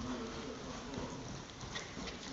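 Hoofbeats of a horse cantering on the sand floor of an indoor riding arena.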